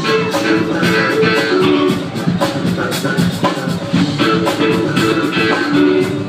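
Live band playing loud and continuously: electric guitars and keyboards over drums keeping a steady beat.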